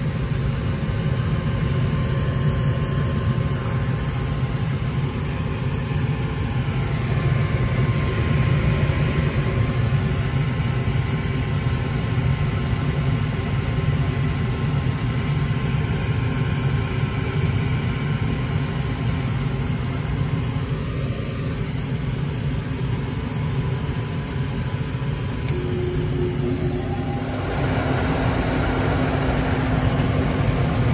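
A 2002 Goodman gas furnace running on a heat call: its draft inducer motor hums steadily and the lit gas burners rush. The pressure switch has closed now that its dirty passage has been cleaned out. Near the end the sound shifts and grows a little louder as another steady whir joins in.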